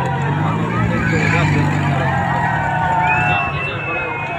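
Crowded swing-boat fairground ride in motion: a steady low engine drone under long, wavering shouts and cries from the riders and the crowd.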